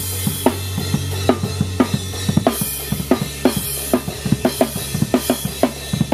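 Live drum kit played up close: kick, snare and tom strikes several times a second, with cymbal crashes at the start and again from about two and a half seconds in, where the beat gets busier. Low held bass notes sit underneath and change pitch at the same point.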